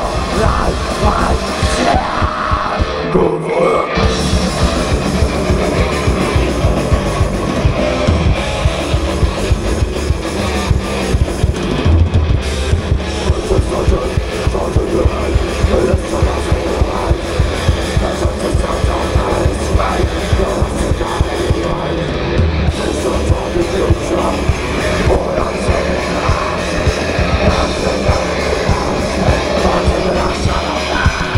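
Thrash metal band playing live: distorted electric guitars, bass guitar and fast drums, loud and dense throughout. The bass and drums drop out for a moment about three seconds in, then the band comes straight back in.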